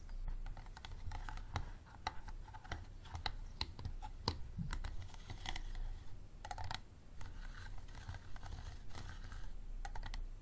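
Fingernails tapping and scratching on a hard, ridged plastic water bottle: quick, irregular clicks mixed with short stretches of scratching.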